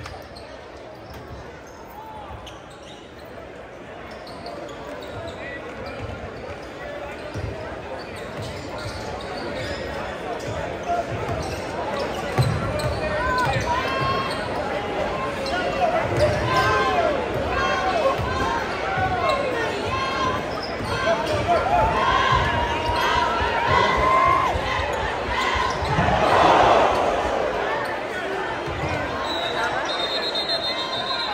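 A basketball being dribbled on a hardwood gym floor, with the thuds of the bounces under the shouting of a large crowd that grows steadily louder and swells into a burst of cheering near the end.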